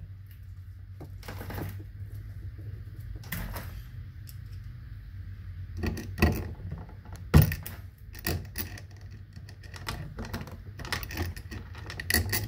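Irregular clicks and taps of a metal tool and hands working at the mounting screw of a range outlet's metal strap, with one sharper knock about seven seconds in, over a steady low hum.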